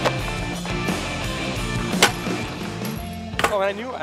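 Rock music with the sharp clack of a skateboard hitting concrete right at the start and a louder crack about two seconds in. Near the end the music drops away and a person's voice starts.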